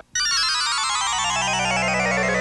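Television network ident jingle: a rapid run of bright electronic notes cascading steadily downward from high to low pitch, starting abruptly, with a low sustained chord entering about a second in.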